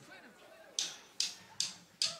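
A band's count-in: four short, sharp ticks, evenly spaced a little under half a second apart, starting a little under a second in, that set the tempo for the next song.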